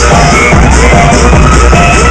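Hard trance DJ set played loud over a nightclub sound system and picked up by the camera's microphone, with a constant heavy bass and short repeating synth notes.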